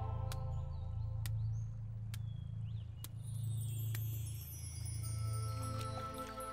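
Soft background score: a low sustained drone with a few sparse, bell-like chime strikes. A shimmering high layer comes in about halfway, and held tones enter near the end.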